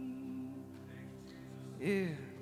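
Soft, sustained live band music: held chord tones ringing, with a wavering sung note fading out in the first half-second and a short sliding, falling note near the end.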